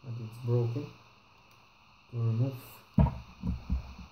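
Handling of a plastic laptop case on a wooden table: a sharp knock about three seconds in, then several dull thumps, as a small black cover piece is pried off a corner of the case's underside.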